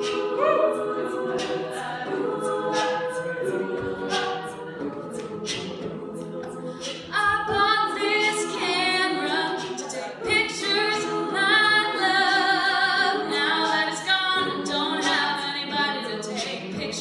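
Women's a cappella group singing: backing voices hold chords over a vocal-percussion beat of about two strokes a second. A solo female voice comes in louder about seven seconds in.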